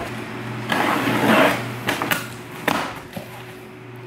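A cardboard shipping box opened by hand: a rasping tear of cardboard about a second in, then several sharp knocks and taps as the flaps are pulled open.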